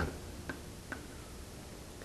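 Two faint ticks, a little under half a second apart, over quiet room tone.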